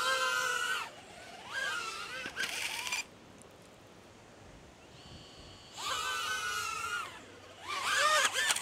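Small quadcopter drone's motors and propellers whining up in several bursts of about a second each, with quiet gaps between and the pitch gliding up in places. The drone is not flying properly on the way up because one of its propellers is broken.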